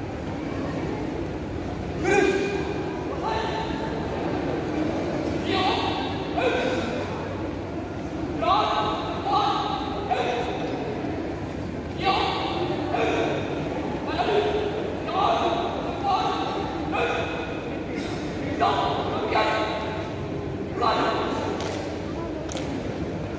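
A marching drill team's short shouted drill calls, one after another about once a second, echoing in a large hall, with a few thuds of boots stamping on the hard floor.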